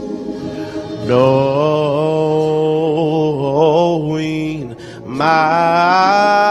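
A male solo singer singing gospel into a microphone without words, holding long notes that waver in pitch; after a brief breath a little before the end, he comes in on another long, louder note.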